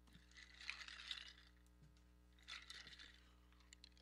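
Near silence: a steady low electrical hum, with two brief faint rustling or hissing noises, one about half a second in and another near three seconds.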